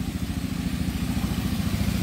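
Small boat's engine running on a canal with a rapid, even beat, growing slightly louder as the boat passes close by.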